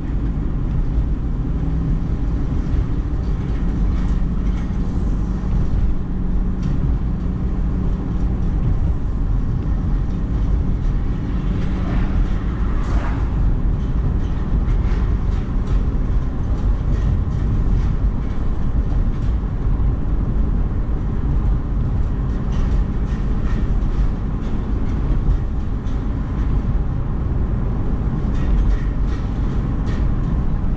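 Steady low rumble of a car driving at road speed, tyre and engine noise heard from inside the cabin. About twelve seconds in, a brief hiss swells and fades.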